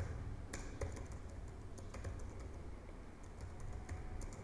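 Typing on a computer keyboard: faint, irregular key clicks over a low steady background rumble.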